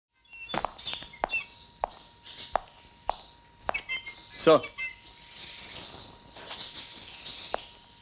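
A series of sharp knocks, about one every half second for the first few seconds and then a few more spaced out, over short high bird-like chirps and a faint steady high tone. A short voice sound about four and a half seconds in is the loudest moment.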